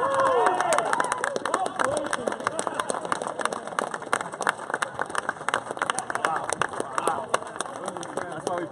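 Men's voices on an outdoor court: a short stretch of talk at the start, then a dense run of quick, irregular sharp clicks with talk faintly behind them.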